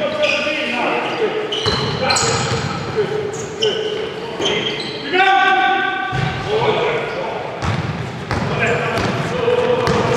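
Basketball game on an indoor court: the ball bouncing on the hall floor and short high-pitched squeaks of shoes on the court, echoing in a large sports hall.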